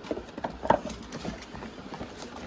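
A few light knocks and taps from hands handling cardboard belt gift boxes on a table. The loudest tap comes about two-thirds of a second in.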